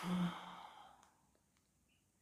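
A man's short sigh: a breath out that starts with a brief low hum of voice and fades away within about a second, leaving quiet room tone.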